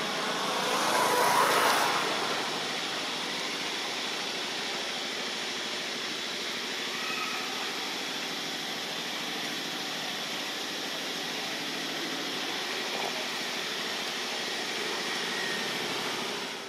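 Steady outdoor background noise with a louder rushing swell about one to two seconds in, and a few faint short chirps scattered through it.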